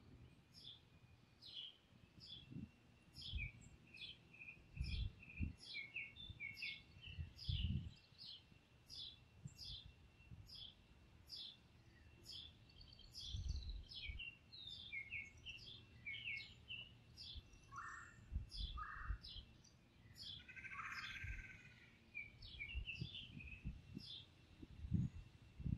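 Songbirds chirping: one bird repeats a short, high, downward-sweeping chirp every half second or so, with other birds calling lower and intermittently. Low gusts of wind rumble on the microphone at intervals.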